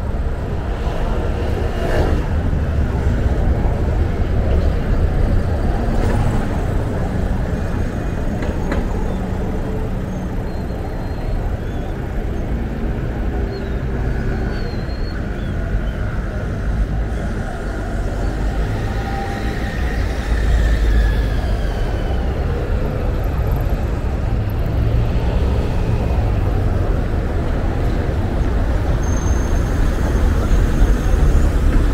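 Road traffic on a city square: a steady low rumble of cars and buses, with one louder vehicle passing about twenty seconds in, its pitch falling as it goes by.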